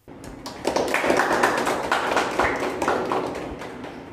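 A small group of people clapping in a room. It swells about half a second in and fades toward the end.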